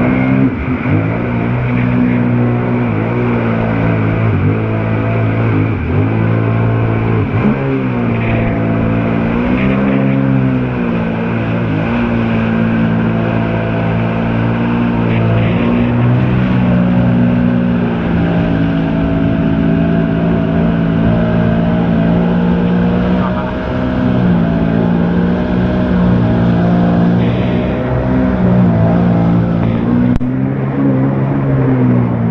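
Sea-Doo Spark Trixx jet ski's Rotax three-cylinder engine and jet pump, throttled up sharply at the start and then running hard. Its pitch dips and rises again and again with the throttle, over a steady hiss of rushing water and spray.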